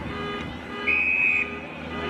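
Umpire's whistle: one short, steady, high blast about a second in.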